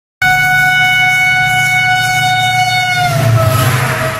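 Train horn sounding one long steady note over the low rumble of a train; after about three seconds its pitch sags slightly and it fades.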